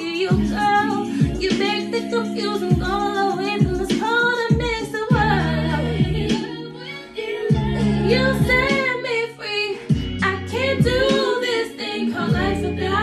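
A woman singing a slow R&B ballad with melismatic runs, over a backing track of sustained bass and chords with scattered drum hits.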